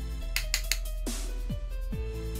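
Background music: held tones over a steady low bass, with a quick cluster of sharp hits about half a second in and falling pitch sweeps near the end.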